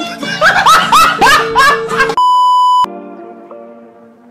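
A short comedic meme sound insert: a run of five quick rising pitched calls over music, then a flat electronic bleep lasting just over half a second, after which soft background music with plucked notes carries on more quietly.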